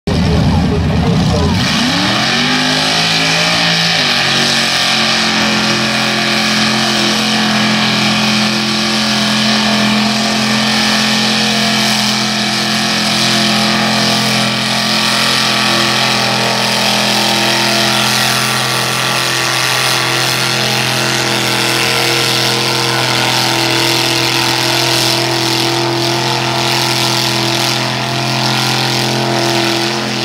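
Lifted pickup truck's engine revving up in the first two seconds, then held at high revs at a steady pitch as the truck churns through deep mud. A dense noise of spinning tyres and flying mud runs under it.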